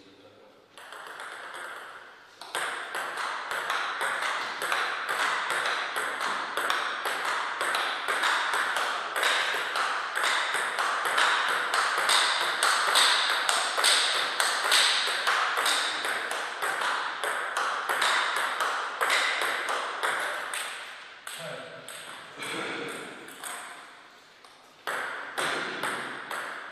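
Table tennis ball in a steady rally, clicking off the paddles and the table several times a second; the rally stops about five seconds before the end.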